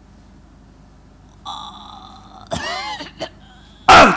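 A woman retching and gagging: a held strained vocal sound, then a wavering belch-like retch with a couple of small clicks. A short, very loud shout right at the end.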